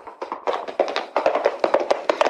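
A rapid, irregular run of sharp taps and knocks, several each second, that carries on throughout.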